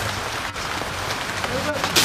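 A steady, even rushing noise, with a faint voice near the end.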